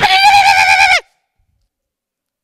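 A man's loud, high-pitched wavering wail lasting about a second, dropping in pitch at the end: the preacher imitating a child crying at night.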